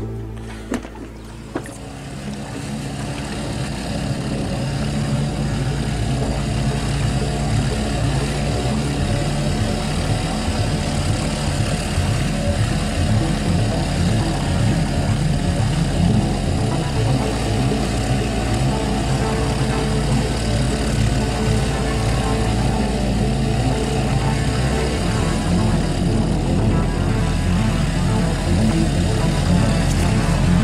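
Small Evinrude outboard motor running steadily as it drives an inflatable dinghy, getting louder over the first few seconds, with background music over it.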